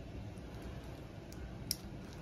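Quiet room with two faint, sharp little clicks in the second half, the second the clearer, from gloved hands working the peripheral IV catheter and its needle being retracted.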